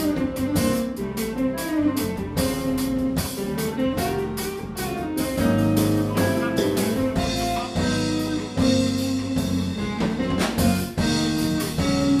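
Live instrumental jazz-fusion band playing: Nord electric keyboard, electric bass guitar and drum kit with a steady beat.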